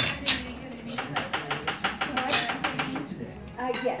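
A rapid, even run of light clicks, about seven a second, lasting about two seconds, from hand work on flat-pack furniture hardware. Voices can be heard behind it.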